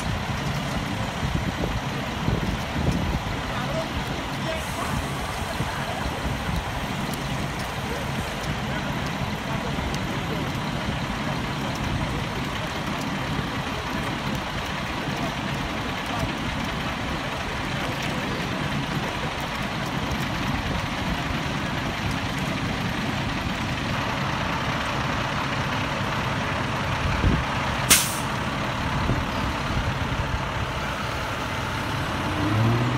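Steady low running of an idling truck engine, with faint voices in the background. A brief sharp hiss sounds about 28 seconds in.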